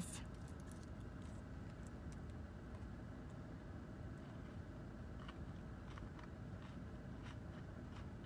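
Quiet, steady low rumble of a car's cabin background, with a few faint clicks and crinkles from fingers handling a foil candy wrapper.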